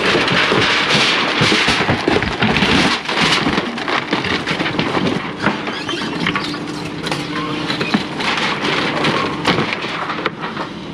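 Excavator bucket tearing into and lifting tornado-wrecked house debris: dense cracking and splintering of wood framing and sheathing with debris clattering, heaviest in the first three seconds, over the excavator's running engine.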